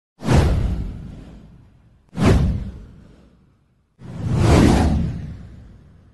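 Three whoosh sound effects of a title-card animation, about two seconds apart: the first two hit suddenly and fade away, the third swells up before fading.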